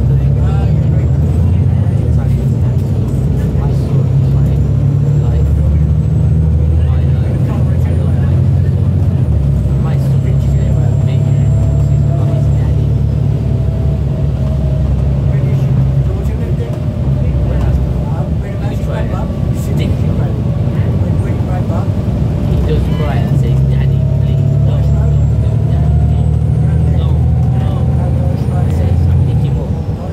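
Volvo B7TL double-decker bus's six-cylinder diesel engine heard from inside on the upper deck, running under load with a deep hum and a whine that rises in pitch as the bus gathers speed, twice: once in the first half and again near the end.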